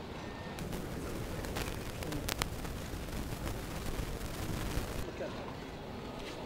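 Conference-hall room noise with a murmur of voices and a few sharp clicks about two seconds in.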